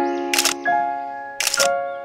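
Background music with held notes that fade between chord changes. A camera-shutter click comes twice, about a second apart, each landing as a new chord begins.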